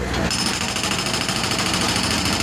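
Bobcat S185 skid-steer loader working on broken asphalt: a steady, rapid mechanical rattle with a high whine, starting a moment in.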